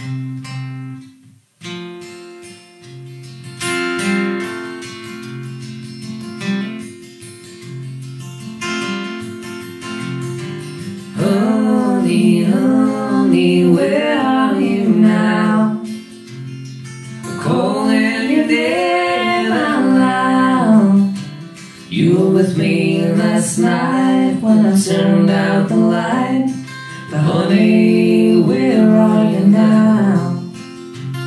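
Live acoustic guitar playing a slow song in waltz time, a few bars of intro alone, then a man and a woman singing over it in phrases from about eleven seconds in.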